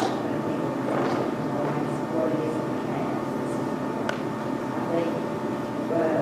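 Indistinct conversation picked up from across a meeting room, over a steady low hum of room noise.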